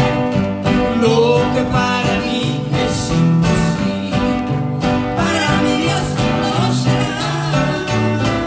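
Live duet of a man and a woman singing a Spanish-language Christian song, accompanied by two strummed acoustic guitars with a steady rhythm and moving bass notes.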